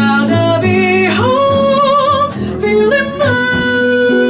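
Female jazz vocalist singing two long held notes with vibrato, accompanied by double bass and archtop electric guitar.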